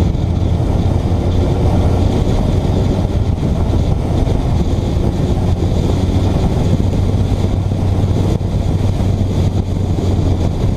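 Motorcycle ridden at speed: loud, steady wind buffeting on the microphone over the low, even hum of the bike's engine.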